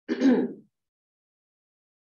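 A woman clearing her throat once, briefly, near the start.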